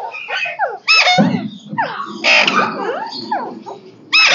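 Parakeets in an aviary calling: a continuous run of harsh squawks and screeches that sweep up and down in pitch, with several birds overlapping and the loudest calls about a second in and just past two seconds.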